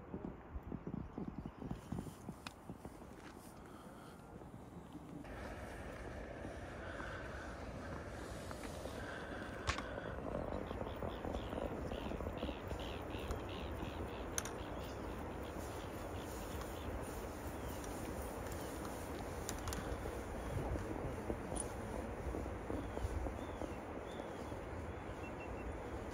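Outdoor ambience: a steady rushing noise that grows fuller about five seconds in, with faint high chirps of birds through the middle.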